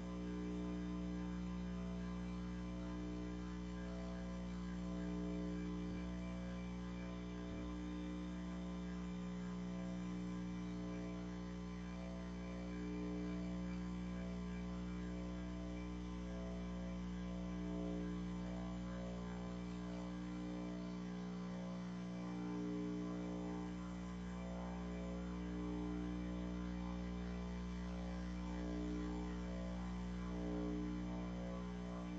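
A steady low hum made of many held tones, swelling gently and fading every few seconds, with no breaks.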